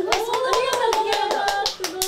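Hand clapping by two or three people, quick and steady at about eight claps a second, with a long drawn-out vocal 'ooh' held over it for most of its length.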